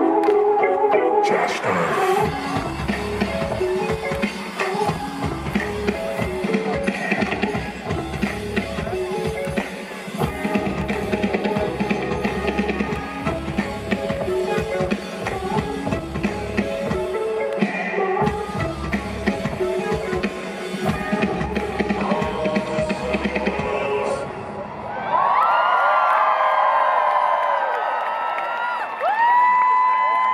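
Live rock band through a big outdoor PA, heard from within the audience: a pounding drum kit and bass under sustained synth chords, drum-heavy to the close. About 25 seconds in the music stops and the crowd screams and cheers.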